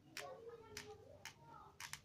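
Faint clicks and crackles of wicker strips being worked by hand as a binding strand is poked through a basket handle, about five sharp ticks spread over two seconds, with a faint murmur underneath.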